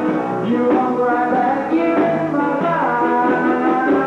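Live rockabilly music: a man singing over guitar and upright bass.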